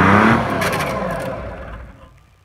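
Timberjack 225 log skidder's diesel engine revving up just after the start, then the revs falling away and the engine sound fading out by the end.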